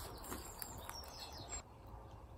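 Faint outdoor ambience with a few short, high bird chirps in the first second and a half; the background then drops quieter.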